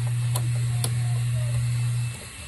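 A steady low hum, cutting off just after the end, with a few light clicks of plastic printer parts being handled at the print-head carriage.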